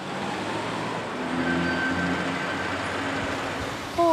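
City street traffic: the steady noise of car engines running and tyres on the road, with a low engine hum in it.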